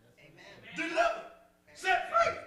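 A man's voice preaching in short, loud phrases, two of them about a second apart.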